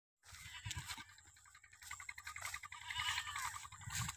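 Goats bleating in short, quavering calls that come more often in the second half, over a low rumble.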